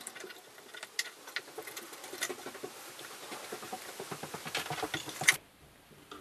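Many small, rapid clicks and scrapes of the telescope mount's RA-axis housing and its wooden padding strips being shifted and reset in a bench vise, ending with a sharper click about five seconds in.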